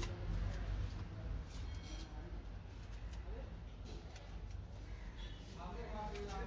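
Faint rustling and a few light clicks of headliner fabric being pulled and tucked by hand, over a low steady hum. A voice starts near the end.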